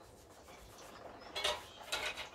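Hand pump sprayer spraying water onto a bicycle's rear derailleur in short hisses, one about a second and a half in and another near the end.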